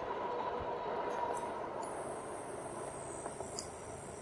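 Steady wind and tyre noise from an electric bike riding on pavement, with a faint steady whine that fades out about two seconds in as the bike slows. A thin high steady tone joins near the same moment.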